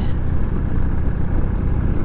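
Harley-Davidson Sportster's V-twin engine running steadily at cruising speed, a low rumble under a steady rush of wind noise.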